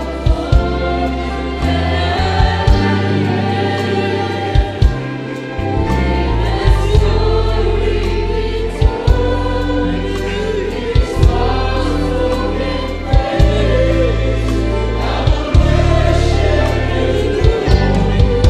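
Church choir singing a gospel worship song in unison, backed by a live band with a drum kit, keyboard and deep sustained bass notes.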